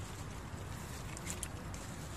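A bare hand squelching and mixing chicken through thick yoghurt-and-spice marinade in an aluminium pot, a soft wet squishing with a few faint clicks about a second and a half in.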